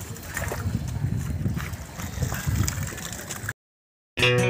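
Water sloshing and gurgling around a keep net being dipped into a fishpond, with a few small knocks. The sound cuts off suddenly about three and a half seconds in.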